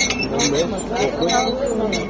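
Green olives clicking and rattling against one another and the metal tray of an olive grading machine as a hand stirs and spreads them, in a run of short clinks. Voices are talking over it.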